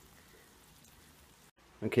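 Near silence: a faint steady hiss, cut off abruptly by an edit, then a man says "Okay" near the end.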